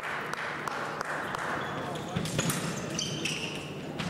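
Ambience of a large sports hall: indistinct voices, light knocks like footfalls on the floor about three times a second, and a few short high squeaks in the second half.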